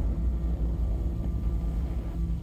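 Deep, steady low rumble of cinematic trailer sound design, with a faint hum above it.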